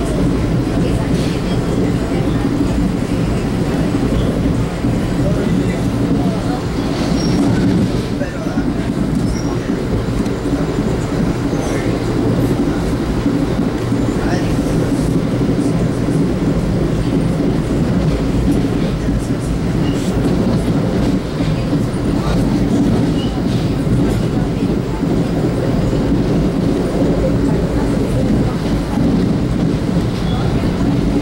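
Steady low rumble and rail noise heard inside a 1982 Comet IIM commuter coach running at speed, with scattered faint clicks from the wheels on the track.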